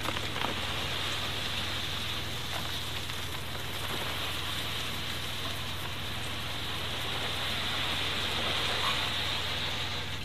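Loose soil pouring from a site dumper's tipped skip into a grave, a steady rushing hiss like heavy rain that stops as the skip empties at the end. The dumper's engine runs underneath as a steady low hum.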